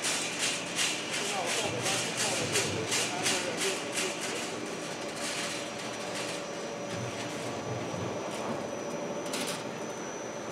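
Perforated cable tray roll forming line running as a punched steel sheet is fed along the roller conveyor into the forming stands. It makes a steady mechanical hum, with a regular clatter of about three knocks a second that fades out a few seconds in. A thin high whine comes in from about the middle, and there is a brief hiss near the end.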